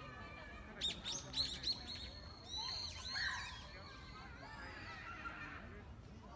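Birds calling in the blossoming trees: a quick run of sharp, high, downward-sweeping chirps about a second in, then a few harsher gliding calls around the middle.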